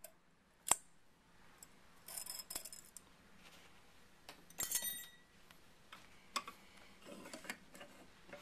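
Faint metallic clicks and scraping of steel rifle parts as the long recoil spring of a Winchester Model 1907 is worked out of the action. The loudest click, about five seconds in, rings briefly.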